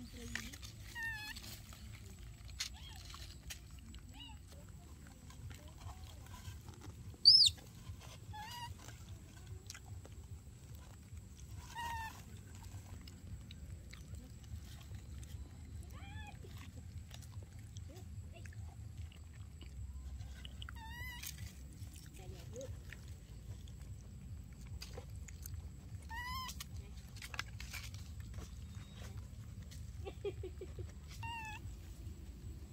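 Baby macaques calling with short, high squeaks and coos scattered throughout, with one loud, shrill squeal about seven seconds in.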